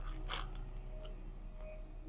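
Low, steady hum of background noise with a short rustling sound about a third of a second in and a faint tick about a second in.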